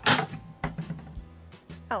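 A rubber dome popper toy snaps back sharply as it is released on a tabletop, followed by a couple of faint knocks as it lands. It tips over rather than leaping into the air.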